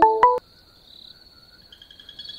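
Smartphone ringtone, a melody of short plucked notes at about four a second, playing its last few notes and cutting off about half a second in as the incoming call is answered. A faint steady high-pitched tone continues in the background.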